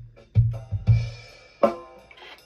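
Recorded kick drum and snare of a DW drum kit, soloed and played back over studio monitors. Two deep kick thumps fall in the first second, and a sharp snare hit rings out about one and a half seconds in.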